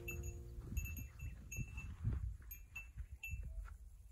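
A few light, high chime-like tinkles, repeating at the same pitches and dying away about three and a half seconds in, over a low uneven rumble of wind on the microphone.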